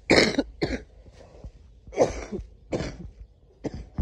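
A person coughing close to the microphone: five harsh coughs in three bouts, the first the loudest.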